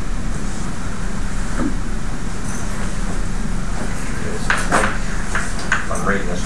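Steady low hum of the lecture room's background, with a few short, sharp sounds in the last second and a half.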